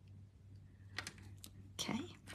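A few faint, sharp clicks about a second in, then a louder short scuff near the end, over quiet room tone.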